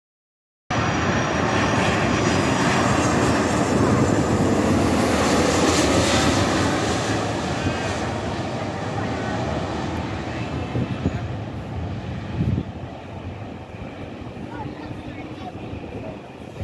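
Jet engines of a twin-engine widebody airliner passing low overhead on landing approach: a loud roar that cuts in just under a second in, is strongest a few seconds later, then fades slowly as the plane moves away.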